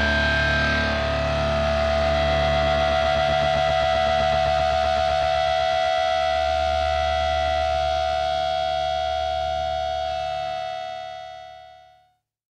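End of a hard rock song: a distorted electric guitar chord held over bass and left ringing, one strong steady note on top, fading out in the last second or so to silence.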